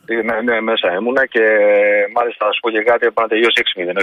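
A man's voice talking over a telephone line, thin and cut off in the highs, with one long held sound in the middle.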